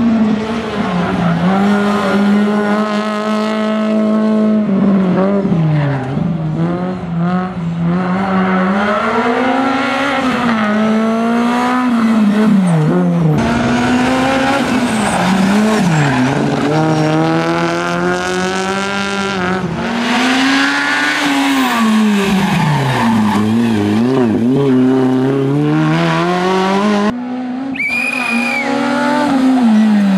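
Honda Civic four-cylinder rally car engine revving hard, its pitch climbing and dropping over and over through gear changes and braking into corners. A brief high tyre squeal near the end.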